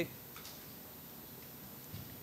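Room tone during a pause in speech: a faint steady hiss with a couple of soft clicks.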